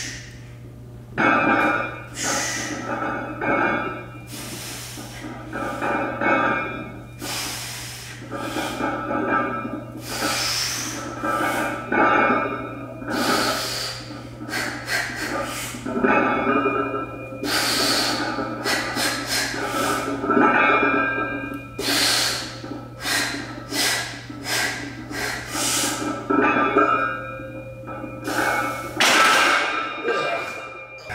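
A weightlifter's sharp, forceful breaths, quick inhales and hard exhales about one every second or so, while he strains to press a 315 lb barbell on the bench.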